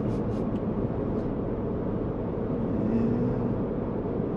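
Steady engine and road noise of a 2021 Ford F-150 with a Whipple-supercharged 5.0L V8, heard from inside the cab while driving at an even pace. There is a slight swell about three seconds in.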